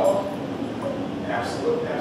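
Quiet human vocal sounds from a performer: a short pitched sound about a second and a half in and a held hum near the end.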